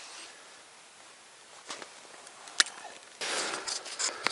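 A quiet stretch with two sharp clicks, then, near the end, a rustling, scuffing burst of steps through deep snow.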